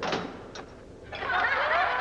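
A short knock, then about a second in a crowd starts cheering and clapping, many voices at once rising to a steady din: a comedy-club audience welcoming a comic.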